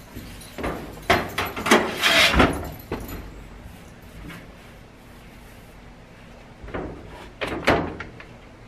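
Plastic and mesh clattering and scraping as a dryer lint screen and a small plastic lint bin with a swing lid are handled. There are two bursts of knocks and scrapes, the first about a second in and the second near the end.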